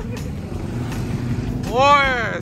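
Motorcycle engines idling steadily. Near the end, a person's voice calls out once, its pitch rising and then falling.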